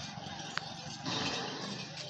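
A dromedary camel vocalising with its head raised and mouth open: a rough, noisy call that swells about a second in, with a single sharp click about half a second in.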